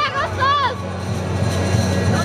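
Spectators shouting for the first half-second or so, then general crowd noise, over a steady low hum.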